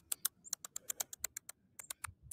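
Rapid, irregular clicking of computer keyboard keys being typed on, about eight to ten faint key clicks a second.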